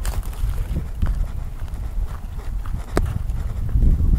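Low, uneven rumble and knocking on a handheld phone's microphone while walking outdoors, typical of wind and handling noise, with a few sharp clicks, one near the start and one about three seconds in.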